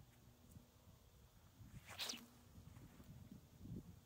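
A 41-inch sling swung and let fly about two seconds in: one short, sharp whoosh as the cord whips round and the concrete gland leaves the pouch. Soft low thumps sound before and after it.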